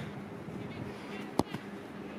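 A single sharp thud of a football being kicked, about one and a half seconds in.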